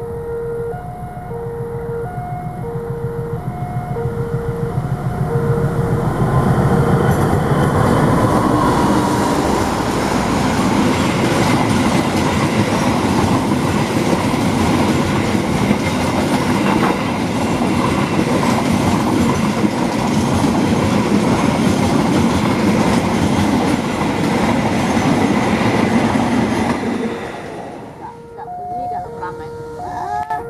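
A GE CC206 diesel-electric locomotive and its passenger coaches pass close by, a loud, steady rumble of engine and wheels on rail that swells over the first several seconds and drops away near the end. At the start, a level-crossing warning alarm sounds in regular two-tone pulses until the train noise drowns it.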